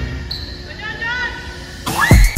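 A basketball bouncing on a gym court, with voices in the hall. Music cuts in just before the end.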